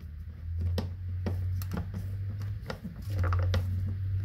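Screwdriver turning down a terminal screw on a 50-amp range receptacle, a string of small irregular clicks and scrapes of the tip in the screw head as the black wire is clamped, over a steady low hum.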